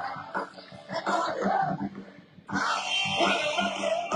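Live band music from an outdoor stage, with guitars and drums. It drops to a brief, uneven lull, then the full band comes back in loudly about two and a half seconds in.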